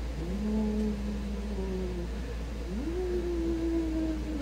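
Two long, drawn-out ghostly 'oooo' moans from a woman's voice, each sliding up and then held, the second pitched higher than the first.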